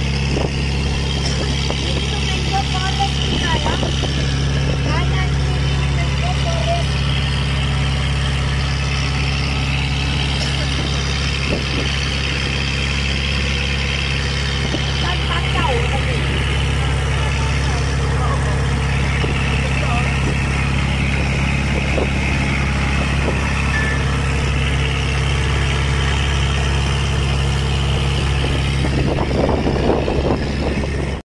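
A boat's engine runs steadily with an even low hum, while people chat over it.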